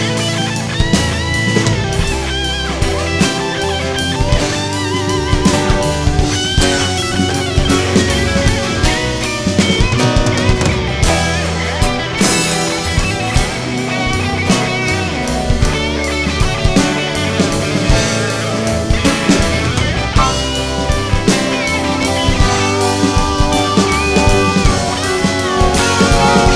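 Rock band playing an instrumental break: a guitar lead line with wavering, bending notes over a drum kit and a stepping bass line.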